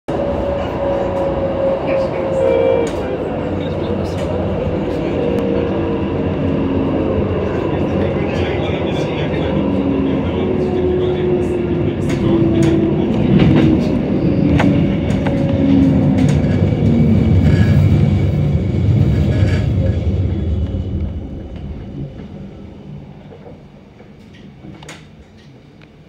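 A CAF Urbos 3 tram running and then braking into a stop. The motor whine falls slowly in pitch as it slows, over wheel-on-rail rumble and scattered clicks. The rumble dies away about 21 seconds in as the tram comes to a halt.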